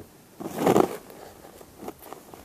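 Rubber eraser scrubbing across drawing paper to rub out pencil lines: one louder scrubbing stroke about half a second in, then fainter rubbing.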